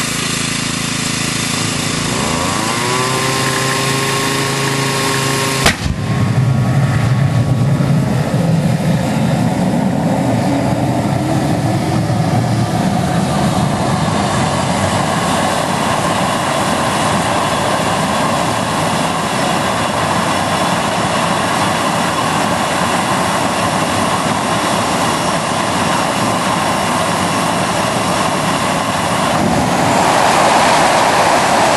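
Home-built gas-turbine jet engine on a kart starting up on propane: a whine rises as it spools up over the first few seconds, a sharp pop about six seconds in as it lights, then a steady jet roar. Near the end the noise changes as it goes over to running on kerosene.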